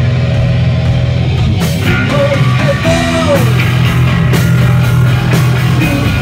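Live punk band playing loud and fast: distorted electric guitar, bass and drums, heard in a small club.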